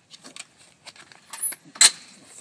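Light clicks and rattling handling noise, rising to a louder scrape about a second and a half in and one sharp click near the end.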